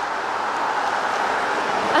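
A passing car's tyres on a snowy street make a steady rushing hiss that swells slightly and then eases.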